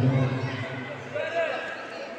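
Voices echoing in a sports hall: a man's low voice at the very start, then higher-pitched calls a little past halfway.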